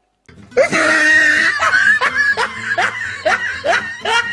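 Laughter, a quick run of repeated rising 'ha' calls about two or three a second, starting about half a second in, over music.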